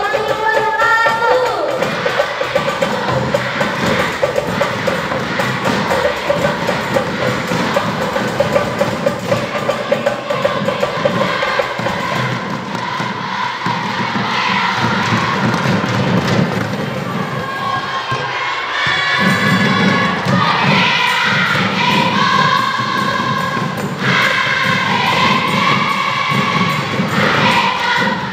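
Marawis ensemble: frame drums and hand drums beaten in a dense, driving rhythm under young women's voices singing together, the singing strongest in the second half.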